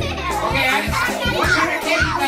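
Many young children chattering and calling out together over background music with a steady beat.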